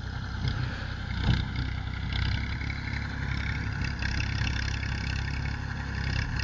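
Tractor engine running steadily under load as it pulls a rotavator tilling the soil.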